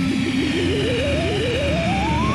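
Cartoon sound effect of a balloon being blown up: a warbling tone that climbs steadily in pitch, over background music.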